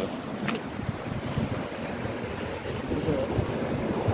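Wind buffeting the phone's microphone over sloshing shallow water as someone wades barefoot through it, with a sharp click about half a second in.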